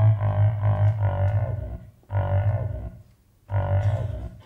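Keytar playing low, drawn-out synthesizer notes with a pulsing wobble: one long note that breaks off about two seconds in, a shorter one after it, and a third starting near the end.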